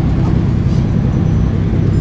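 A car engine idling close by: a steady low rumble.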